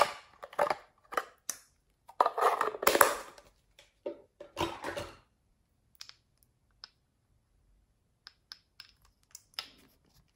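Hands handling small plastic cosmetic containers. There are several short bursts of crackly plastic rubbing and scraping in the first five seconds, then a scatter of small clicks as a glass dropper bottle of gold glitter is handled and its cap worked open near the end.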